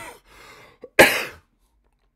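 A man coughing twice into a close microphone: a short cough at the start and a louder, longer one about a second later.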